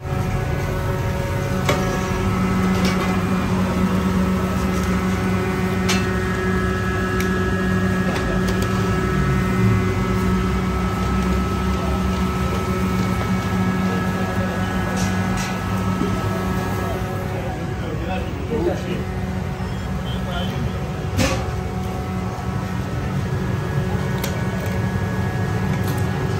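Busy kitchen noise: a steady low machine hum under faint voices, with now and then a sharp clink of steel pots and lids being handled.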